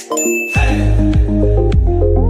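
Electronic workout music with a short, high bell-like ding right at the start, the interval timer's signal that rest is over and work begins. About half a second in the music's heavy bass and steady beat come in.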